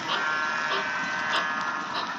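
HO scale model train running, heard from a car riding in the train: a steady whine from the small electric motor, with a wheel click over the rail joints about every two-thirds of a second.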